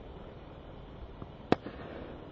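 A single sharp crack of a cricket bat striking the ball, about one and a half seconds in, over faint outdoor background; the shot goes for four runs.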